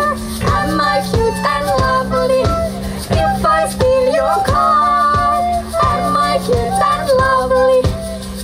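A band playing live: a steady drum beat and bass under a high melody line played on a plastic recorder at the microphone.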